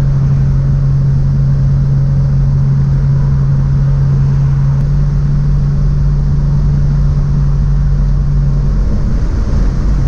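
Cabin drone of a 1951 Hudson Hornet cruising at highway speed: a loud, steady low hum from its straight-six engine and drivetrain over road noise. The hum wavers briefly near the end.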